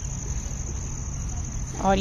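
Crickets chirping in a steady, high-pitched trill over a low rumble of outdoor background noise. A woman's voice starts just before the end.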